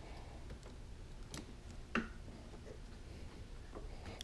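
Quiet room tone with a few faint, small clicks, the clearest about two seconds in: wiring plugs and plastic connectors under a motorcycle seat being handled.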